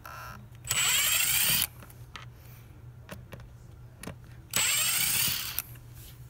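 Makita cordless impact driver running in two bursts of about a second each, about four seconds apart, backing out the screws of a motorcycle air-box cover, with a few light clicks of tool and screw handling between them.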